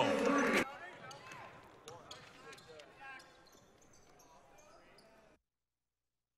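A basketball bouncing on a hardwood gym floor amid faint voices in the gym, growing fainter and cutting to silence near the end.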